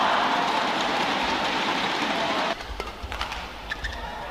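Arena crowd cheering and clapping as a rally ends and a point is won, cutting off suddenly about two and a half seconds in. A few sharp knocks follow near the end.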